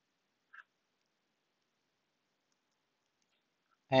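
Near silence, broken by one faint, very short click about half a second in.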